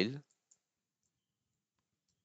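A few faint computer-keyboard keystroke clicks against near silence, after a spoken word cuts off at the very start.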